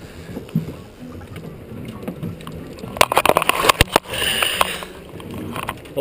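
Water slapping and sloshing against a drift boat's hull, with a quick flurry of sharp splashes and knocks about halfway through as a trout is landed in a landing net beside the boat.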